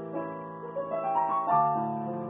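Solo piano playing slow, sustained music: a short run of notes stepping upward, then a new chord with a low bass note struck about a second and a half in.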